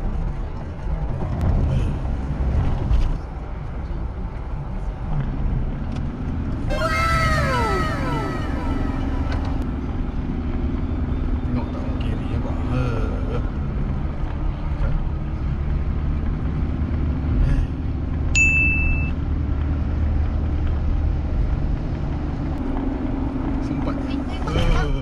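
Steady road and engine rumble heard from inside a moving car's cabin. About seven seconds in, a short burst of falling, whistle-like tones cuts across it, and about eighteen seconds in a brief high beep sounds.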